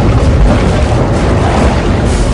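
Film soundtrack of an underwater submarine scene: a loud, steady deep rumble with music beneath it.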